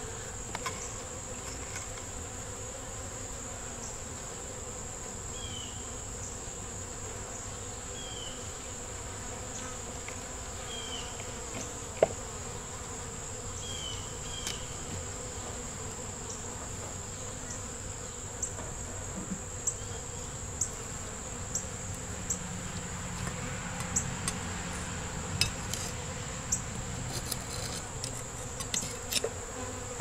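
Honeybees humming steadily around an open Langstroth hive, over a steady high-pitched insect drone. A metal hive tool scrapes and clicks against the wooden frames, with one sharp knock about twelve seconds in and scattered clicks in the last third.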